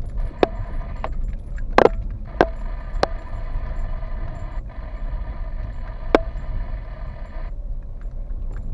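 Car driving slowly over a rutted dirt track, heard from inside the cabin: a steady low rumble of the car rolling, broken by sharp knocks and rattles from the car jolting over ruts and stones, the loudest about two seconds in. A faint steady high hum runs under it and stops near the end.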